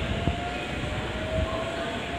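JR Central 313-series electric train pulling out of the station, its motor whine rising slowly in pitch over a low rumble of wheels on the rails.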